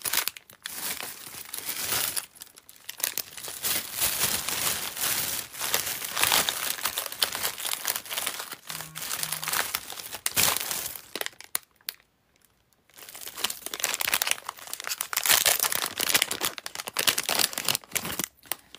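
Continuous crinkling and rustling, like plastic or packaging being handled close to the microphone, with many small crackles. It stops for about a second roughly twelve seconds in, then resumes.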